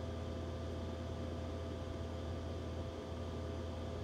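Steady low hum with a faint even hiss over it: room tone, with no other sound standing out.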